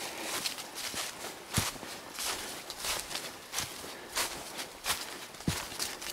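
Footsteps walking through a thick layer of dry fallen leaves, a crunch at each step, about two steps a second. Two heavier low thuds come about a second and a half in and near the end.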